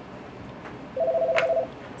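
A telephone line tone: one steady two-note beep lasting under a second, starting about a second in, with a faint click partway through.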